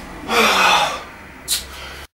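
A man gasping for breath after a barbell set, with one long heavy exhale starting about a third of a second in and a short sharp breath near the end.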